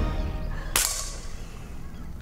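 A single gunshot about three-quarters of a second in: a sharp crack with a short ringing tail.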